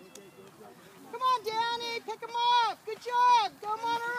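Spectators shouting encouragement: a quiet first second, then a series of loud, high-pitched held shouts, each falling off at its end.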